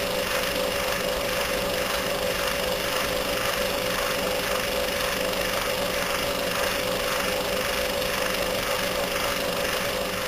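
Dark droning soundtrack: a dense, steady grinding noise with one constant mid-pitched hum held through it and a faint rapid pulsing.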